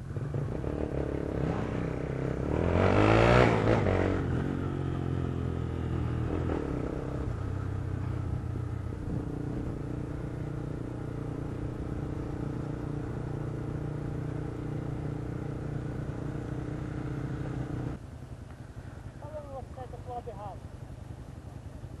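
Motorcycle engine running while riding in traffic: it revs up and back down about three seconds in, then holds a steady cruise. Near the end the engine sound drops away to a lower level.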